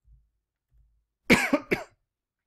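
A person coughing twice a little over a second in, the first cough longer and louder than the second.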